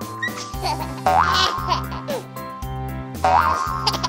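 Light children's background music with a regular bass line and held tones, with short cartoon-style sound effects that glide up in pitch and one that glides down.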